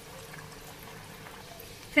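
Hot refined oil in a kadhai sizzling and bubbling steadily while a sweet wholewheat poori deep-fries.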